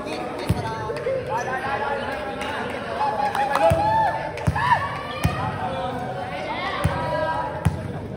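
Volleyball thudding on the hard court floor of a large sports hall: about six single thuds, three of them about three-quarters of a second apart in the middle, amid players' voices.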